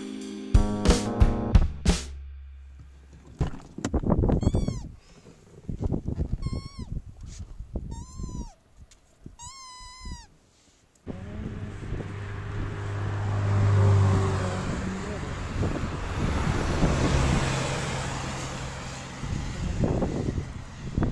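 The tail of a music track with drums, then a dog whining: four short, high whines, each rising and falling, about two seconds apart. After a sudden change, steady traffic and wind noise with a low hum that swells and fades as a vehicle passes.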